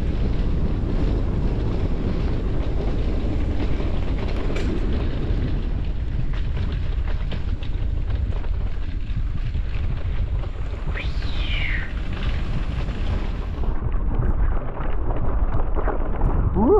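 Wind rushing over the microphone of a camera on a moving mountain bike, with the rattle of the bike over a rough, wet dirt track. A brief high squeak falls in pitch about eleven seconds in.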